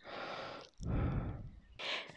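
Two soft breaths into a close headset microphone, the second with a low puff of air on the mic.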